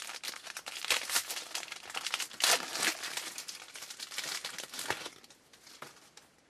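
Foil wrapper of a 2012 Bowman Jumbo baseball card pack being torn open and crinkled: a dense run of crackles, loudest about two and a half seconds in, thinning out about five seconds in.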